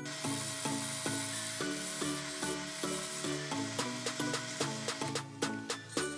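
Background music with stepped melodic notes, over a steady scraping hiss of a turning tool cutting into a wood blank spinning on a lathe; the hiss fades about five seconds in.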